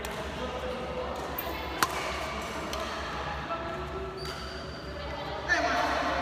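Badminton rally: a racket strikes the shuttlecock with one sharp, loud crack about two seconds in, with a few fainter hits around it, over a steady background of voices.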